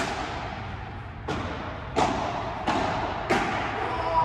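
Padel rally: a padel ball being struck by solid padel rackets and bouncing on the court, heard as about five sharp knocks, roughly one every two-thirds of a second, each echoing briefly in the covered hall.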